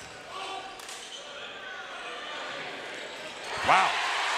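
Basketball being dribbled on a hardwood gym floor during live play, under a faint murmur of spectators. A commentator's loud "Wow" comes near the end, reacting to a made three-pointer.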